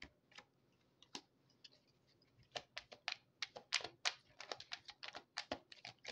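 A run of light, sharp, irregular clicks and taps, a few isolated ones at first, then several a second from about halfway in, like fingers typing or small stiff objects being handled.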